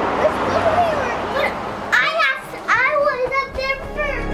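Young children calling out in high-pitched, excited voices from about halfway in. Before that there is a steady rushing noise with faint talk under it.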